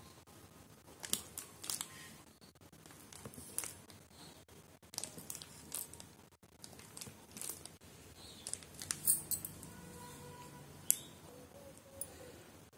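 Knife cutting through set coconut barfi in a tray: scattered faint scrapes and clicks as the blade is pressed through the fudge and touches the tray.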